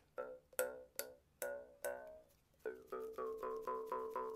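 Cheaply made Snoopy jaw harp, with a wide gap between reed and frame, plucked: five single twangs about every half second. After a short pause comes a quicker run of about five plucks a second, whose ringing overtone rises and then holds as the mouth shape changes.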